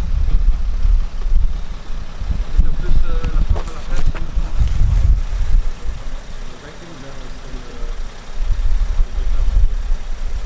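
A loud, uneven low rumble that drops away just past the middle and builds again near the end, with faint voices about three to five seconds in.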